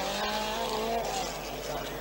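Opel Ascona 400 rally car's four-cylinder engine running hard at a steady pitch as the car slides through a gravel corner. The note fades after about a second as the car pulls away.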